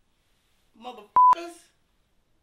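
A censor bleep: one loud, steady high beep about a fifth of a second long, cut sharply into a man's brief spoken phrase about a second in.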